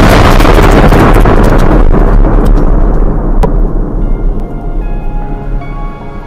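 Blast of an explosive test charge against an armored vehicle, heard from inside the cabin: a loud, long rumble that dies away over about four seconds, with scattered debris clicks. Background music comes up near the end.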